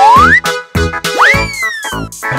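Bouncy children's cartoon music with a beat, overlaid with whistling boing-style sound effects: a quick rising glide at the start, then another that swoops up and slowly falls away in the second half.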